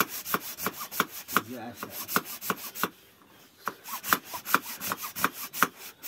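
Hacksaw sawing through a water buffalo's horn, about three back-and-forth strokes a second, with a short pause about three seconds in.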